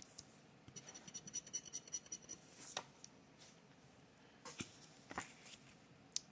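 Paper scratch-off lottery tickets being handled and swapped on a desk: faint rustling and scraping of the card for a second or so, then a few light taps and clicks as a ticket is set down.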